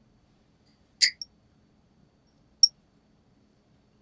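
Steel nail nippers snipping through a thickened toenail: a sharp snip about a second in, and a shorter, higher click about a second and a half later.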